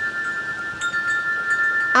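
Wind chimes ringing: two clear tones held steadily, with another chime sounding just under a second in.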